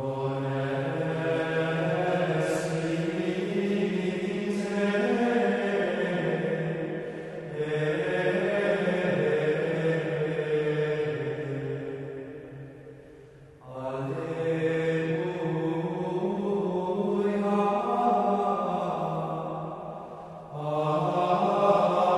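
Men's choir of Dominican friars singing a Marian plainchant in unison, the melody moving in small steps in long phrases with three short breaks for breath.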